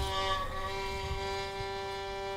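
Violin playing one continuous note, held steady without any change in pitch.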